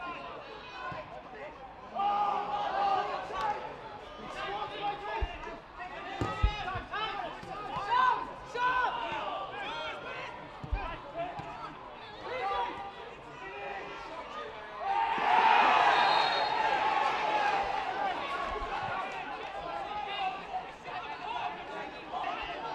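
Shouts and calls from players and a small football crowd during open play, with a few dull thumps of the ball being struck. About fifteen seconds in the voices swell into a cheer, the crowd reacting to a goal.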